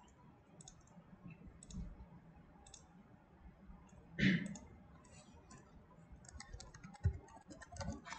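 Faint computer keyboard typing and mouse clicks, scattered at first and coming in a quick run near the end as a file name is typed. One brief louder sound about four seconds in.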